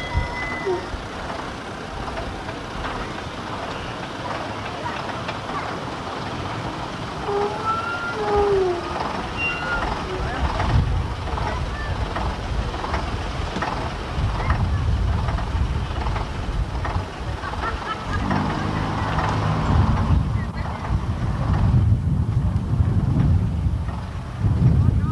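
Vintage single-deck bus engine running as the bus moves slowly forward and pulls up, its low rumble growing heavier about halfway through.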